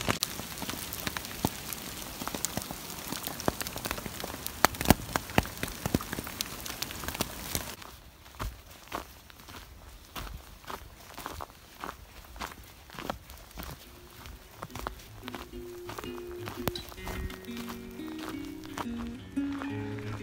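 Hail and rain pelting a tarp in a dense patter of small hits for about the first eight seconds. Then footsteps on hail-strewn ground, about two steps a second. Background music with held notes comes in over the second half.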